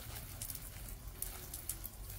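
Water sprinkled like rain onto freshly loosened garden soil, a faint, irregular patter of drops.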